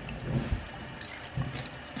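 Handling noise from a camera being moved and set in place: a few soft low bumps and one sharper knock about half a second in, over faint room noise.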